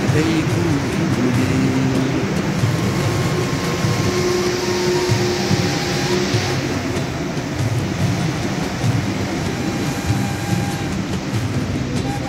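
A song with a stepped, repeating bass line plays over the steady running noise of a rubber-tyred Montreal MR-73 metro train pulling out of the station and moving away; the rolling noise swells about halfway through.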